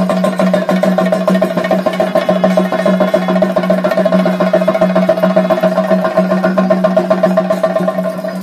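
Fast, dense temple drumming, the chenda ensemble that drives a Kerala Theyyam dance, with a single steady held note sounding underneath throughout.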